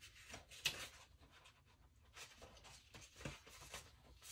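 Faint, soft rustles and light taps of paper sticker sheets being handled, a few scattered strokes.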